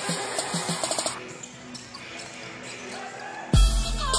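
Music with a steady beat for about a second, then a quieter stretch, then a loud bass-heavy section coming in about three and a half seconds in.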